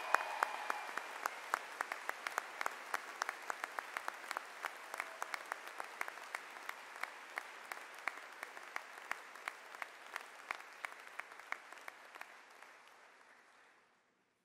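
Audience applause, with many single sharp claps standing out from the crowd, slowly dying away before cutting off abruptly near the end.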